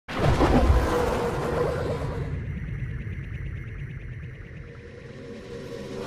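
Synthesized music sting for a logo intro: a loud hit right at the start that slowly fades away over several seconds, then begins to swell up again near the end.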